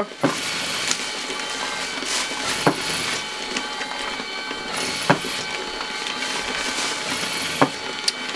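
Automatic LAB500 labelling machine with feeder and conveyor belt running: a steady mechanical hum with a faint whine, broken by a few sharp clicks about two seconds apart as coffee bags go through.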